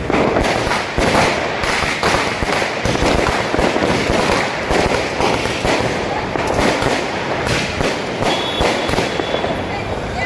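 Firecrackers going off in a rapid, unbroken stream of cracks and bangs, several a second.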